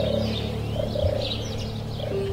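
Birds chirping and twittering in quick short calls, over a bed of steady, held low musical tones.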